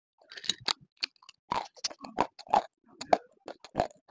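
Close-miked mouth crunching and chewing of crumbly, brittle chunks: irregular sharp crunches, several a second.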